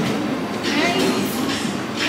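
Indistinct background chatter of a crowded restaurant over a steady rumbling din.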